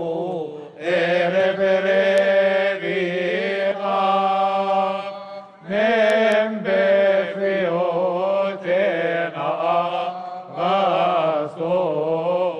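Coptic Orthodox deacons' choir chanting a hymn in unison in long, drawn-out melismatic phrases over a steady low held note, with brief breaks for breath about a second in and again near the middle.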